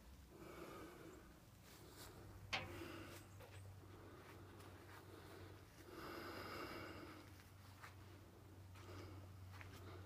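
Near silence: a faint steady low hum and faint soft rustling, with one short sharp click about two and a half seconds in.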